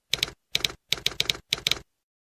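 Typewriter key strikes as a sound effect laid over letters being typed out: about ten sharp clacks in quick groups of two to four, stopping shortly before the end.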